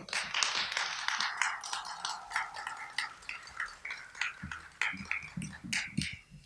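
Audience applause in an auditorium, starting at once and thinning out over about three seconds into scattered claps.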